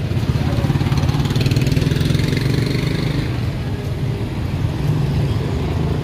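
A motorcycle engine running close by, a low, rapidly pulsing rumble that swells at the start and eases a little in the second half, over street traffic.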